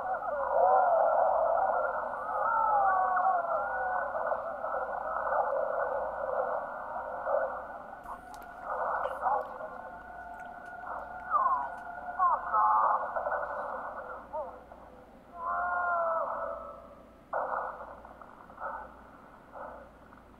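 Film soundtrack squeezed into a narrow midrange band, so it sounds thin and muffled, carrying sounds that slide up and down in pitch, including growling and frantic voices, with a stretch of held steady tones in the middle.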